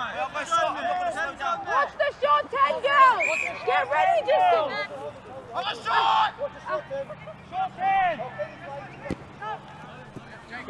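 Several voices calling and chattering at once across an open sports field, overlapping so that no words come through, with one louder shout about six seconds in.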